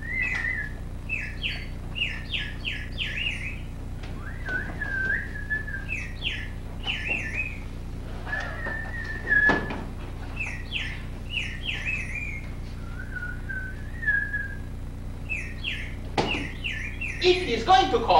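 A caged songbird chirping and whistling: runs of four or five quick rising chirps alternate with longer held whistled notes, with a single thump about nine and a half seconds in.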